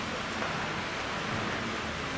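Steady, even background noise of a large indoor hall with a group of people moving through it, with no distinct events.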